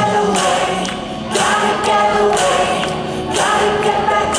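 Audience singing along in unison with a live rock band, many voices carrying the melody over electric guitar.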